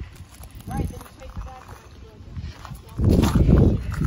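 Footsteps in slide sandals on loose gravel, scattered crunching clicks, with a louder stretch of crunching and rustling about three seconds in.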